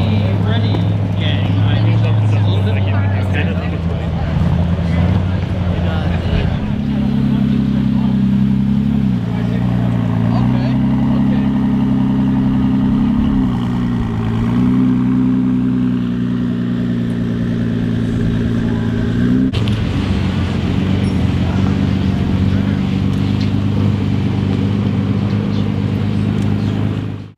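Cars' engines running as they drive slowly past: first the Cunningham C3's Chrysler Hemi V8 at low speed, then, from about six seconds in, the Ford GT's twin-turbo V6, its pitch rising and falling as it moves off.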